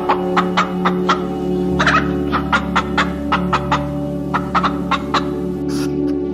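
A domestic hen clucking: a string of short, separate clucks, two or three a second, over background music with steady held tones. The clucks stop about a second before the end.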